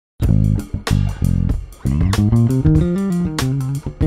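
Electric bass guitar played solo, starting with a few sharp, separate notes and moving about two seconds in into a fast run of notes stepping up and down in pitch.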